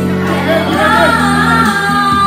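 Karaoke: a woman singing into a microphone over a backing track played through a party speaker, with other women and children in the room singing along.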